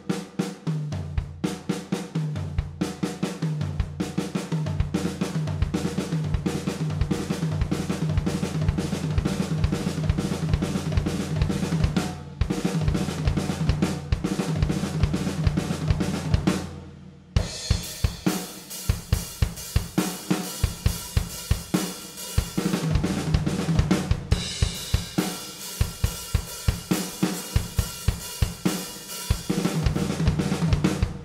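Drum kit playing a sixteenth-note triplet fill over and over: a kick, two left-hand snare hits and a right-hand snare hit, then high tom and floor tom, with the toms ringing. After a short break about seventeen seconds in, the fill goes on with cymbals ringing over it.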